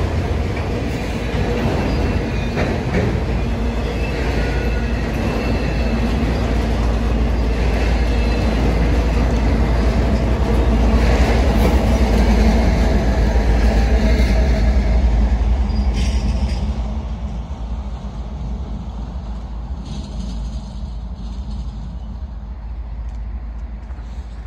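Freight train of autorack cars rolling past, followed by a diesel locomotive at the rear of the train. The rumble is loudest as the locomotive goes by, about halfway through, and fades away over the last several seconds.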